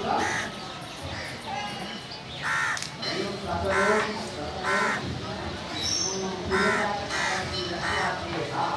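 Crows cawing repeatedly, a short harsh call roughly once a second, over a background murmur of people's voices.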